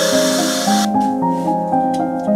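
Air hissing into the chamber of a vacuum casting machine as its vacuum release valve is opened, a hiss of about a second that cuts off suddenly. Background music plays throughout.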